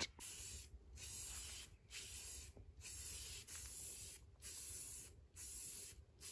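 Aerosol spray can of Rust-Oleum 2X Ultra Cover paint-and-primer hissing faintly in about six short spurts, each under a second, with brief pauses between, as a white coat is sprayed onto the model boat hull.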